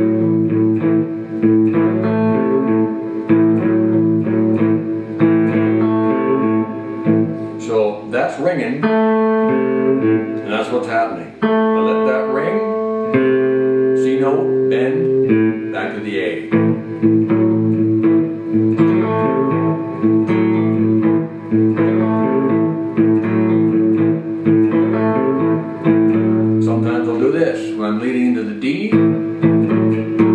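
Fender Stratocaster electric guitar played fingerstyle: a blues shuffle in A, the thumb keeping a steady bass line on the low strings while the fingers add rhythm and lead lines with hammer-ons.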